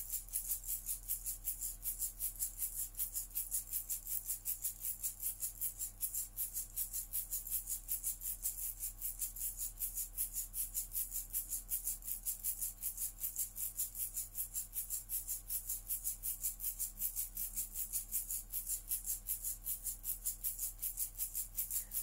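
A hand rattle shaken in a steady, fast rhythm, about five shakes a second, kept up without a break over a faint low hum.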